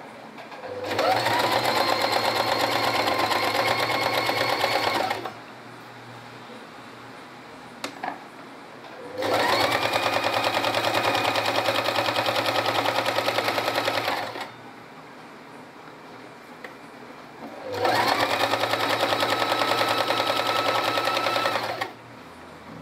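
Electric sewing machine stitching fabric in three runs of about four to five seconds each; each run speeds up at the start, holds a steady pace, then stops, with short pauses between. A faint click falls in the second pause.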